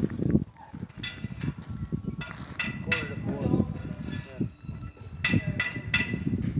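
People's voices talking, not close to the microphone, with a series of about eight sharp metallic clinks that ring briefly, coming in a bunch in the first half and again near the end.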